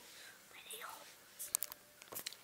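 A faint whisper, then a few quick, light clicks about one and a half seconds in.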